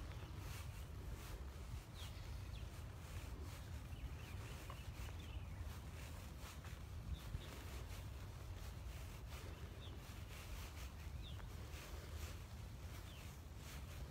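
Outdoor ambience: a steady low wind rumble on the phone's microphone, with faint, scattered bird chirps and a few light clicks.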